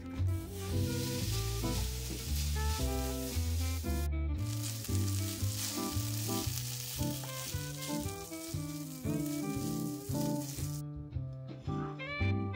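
Vegetable fried rice sizzling in a frying pan as it is stirred with a wooden spatula, with background music playing throughout. The sizzle breaks off briefly about four seconds in and stops about a second before the end.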